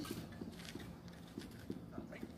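Faint footsteps of a worker walking a few steps across a sandy concrete slab: short, irregular soft knocks.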